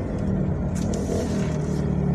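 Car engine and road noise heard from inside the cabin while driving: a steady low hum, with a brief hiss about a second in.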